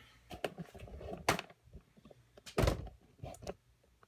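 Handling noise as the camera is picked up and moved: a string of clicks and knocks, with a sharp strike a little over a second in and the loudest thud about two and a half seconds in.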